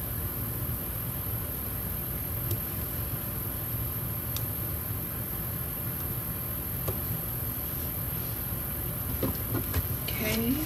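Steady low background hum, with a few faint ticks and light rustles from planner stickers being handled and pressed onto paper pages.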